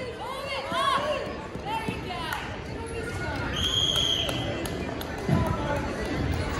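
Spectators' chatter and children's voices in a large, echoing gymnasium, with a short whistle blast a little past halfway and a few dull thuds.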